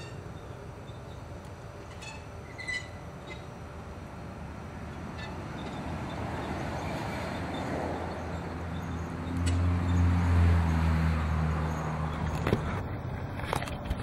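A passing motor vehicle: a low engine drone and road noise that build to their loudest about ten seconds in, then fade.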